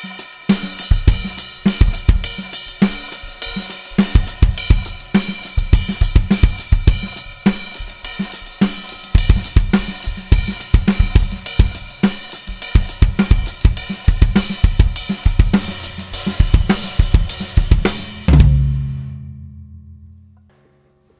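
Drum kit played in a funk groove: a steady hi-hat and snare pattern over bass drum figures improvised in groups of twos. About eighteen seconds in it ends on one loud final hit whose low ring fades away.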